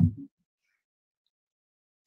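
A man's voice trailing off at the end of a phrase in the first quarter second, then near silence: the call's audio cut to nothing.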